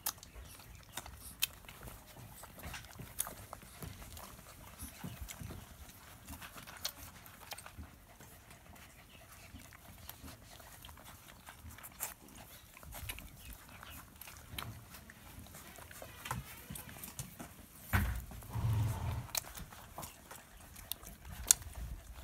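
Puppies suckling from their mother dog: scattered soft, wet smacking clicks, with a louder low thump and rumble near the end.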